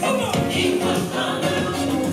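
Gospel music with a choir singing.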